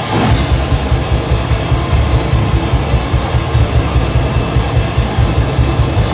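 Death metal band playing live at full volume: heavily distorted guitar and bass over fast, even drum hits, with cymbals crashing in at the start.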